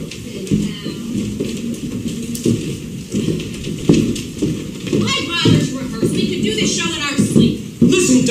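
Several people's voices on stage, with no clear words.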